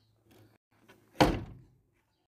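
A door shut with one heavy slam about a second in, preceded by faint handling clicks and dying away within half a second.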